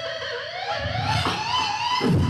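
Beatboxer's voice holding a long pitched tone into a microphone that dips slightly about half a second in, then glides steadily upward to nearly twice its pitch, with only a faint beat underneath.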